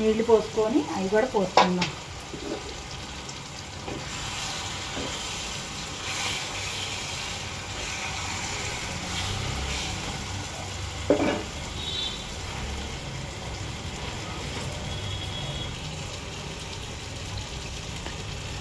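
Masala-coated fish pieces frying in oil with chopped onions in a nonstick pan, a steady sizzle. A wooden spatula turns the fish, with one sharp knock against the pan about eleven seconds in.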